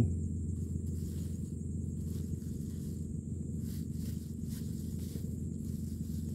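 Faint rustling of a plastic bag as a gloved hand digs through soil and bait worms, over a steady low rumble.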